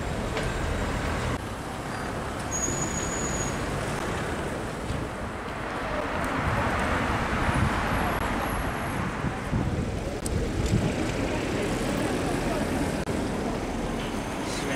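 Street traffic noise, with a vehicle passing that swells up in the middle and fades away.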